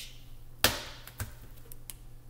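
A plastic flower picket being pushed into a foam pad: a sharp click about half a second in, then a softer knock and a faint tick.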